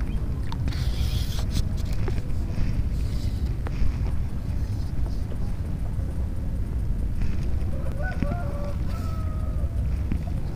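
Wind buffeting the microphone in a steady low rumble, with a few faint clicks; near the end a faint, drawn-out pitched call sounds for a second or two.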